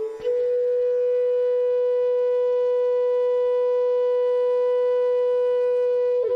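Instrumental music: a flute holds one long, steady note after a brief dip at the very start.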